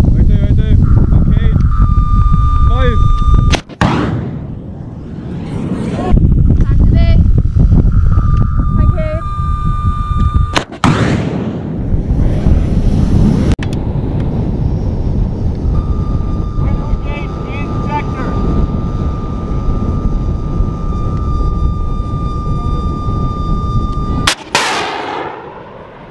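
FIM-92 Stinger shoulder-fired missile launches, three times: each time a steady high tone from the launcher's seeker, the signal that it has locked onto a target, ends suddenly in a sharp bang as the missile fires, followed by a fading rush. Heavy wind rumble on the microphone.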